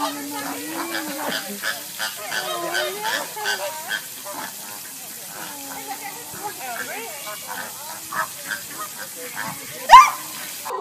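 Flamingos calling with low goose-like honks and grunts as they crowd in to feed from a hand. A short, sharp, loud cry comes near the end.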